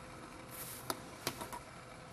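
Quiet room tone with a faint steady hum, a short soft hiss about half a second in, and three faint clicks in the second half, as of light handling at the bench.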